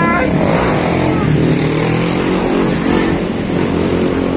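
Street traffic dominated by a motorcycle engine running close by, a steady loud engine drone.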